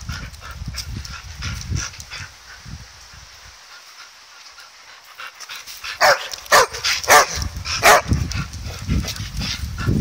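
Border collie play-barking over a football: about six seconds in come four loud, sharp barks within two seconds, then softer ones. Light knocks and scuffles come first.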